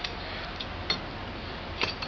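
A light metal click from a hand-held clamp being handled, about halfway through, over a steady room hiss.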